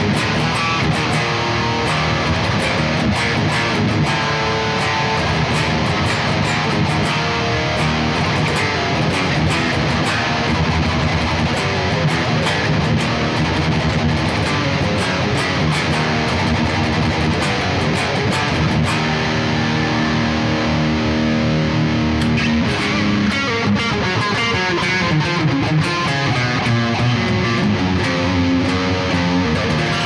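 A 2007 Gibson Flying V electric guitar played through a Bogren AmpKnob RevC amp simulator, riffing continuously with a distorted metal tone.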